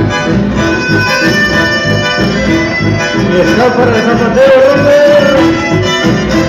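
Live band music led by a piano accordion playing the melody, with guitars and a steady bass beat, loud throughout.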